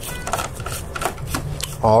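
Hand-turned Torx T30 screwdriver loosening a server CPU heatsink's screws: a rapid run of small clicks and scraping.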